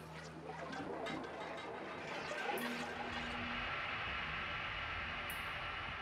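Electronic music in a DJ mix at a transition: the low bass drops out, a noisy wash swells, and sustained synth tones come in from about three seconds in.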